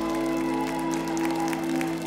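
The song's closing chord held and ringing out, with clapping and applause over it.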